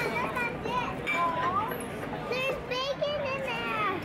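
Children's high-pitched voices calling and chattering.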